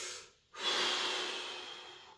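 A weightlifter breathing hard under a heavy log held at the shoulders. A breath dies away just after the start, and after a short pause a long, louder breath begins about half a second in and fades out.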